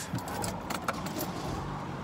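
A bunch of keys jangling in scattered light clinks and rattles.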